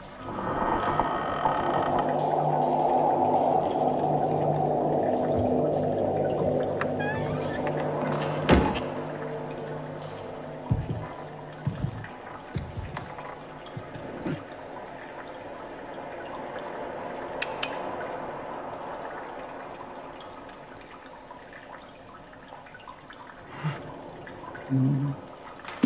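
Film sound design: a swell of rushing, pouring water over a low steady drone, loudest in the first few seconds and fading away after about eight seconds. A single sharp thud comes about eight and a half seconds in, followed by a few faint scattered knocks.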